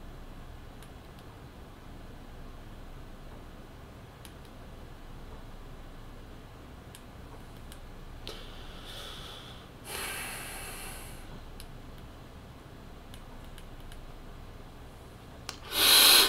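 Quiet room with a few faint clicks, like buttons being pressed on a vape mod. About eight seconds in comes a breathy rush of air lasting roughly three seconds, a person breathing out.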